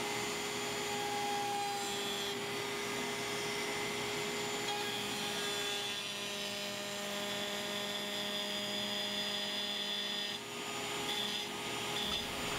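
Router table running a round-over bit, cutting a rounded edge along an oak board. A steady motor whine over cutting noise, with a brief dip about ten and a half seconds in.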